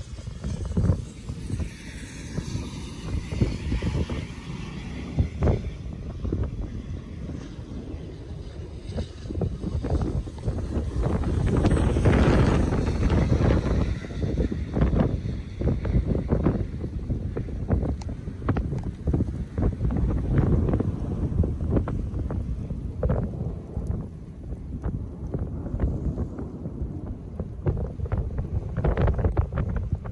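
Gusting wind buffeting the microphone: a low, uneven noise that swells about twelve seconds in and again later.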